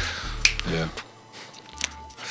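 Two sharp clicks about a second and a half apart, with a brief murmured voice between them and a faint low hum underneath.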